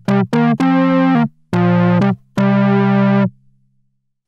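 Moog Mother-32 analog synthesizer playing a short run of notes at different pitches, two quick ones and then three held longer, stopping a little after three seconds in. Its filter cutoff is swept by a resonant 'ringing' envelope from a Sly Grogan envelope generator, giving a bite to the start of each note's attack.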